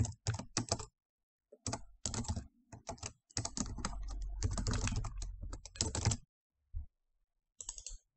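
Typing on a computer keyboard in quick bursts of keystrokes, pausing briefly between bursts and stopping for about a second shortly before the end.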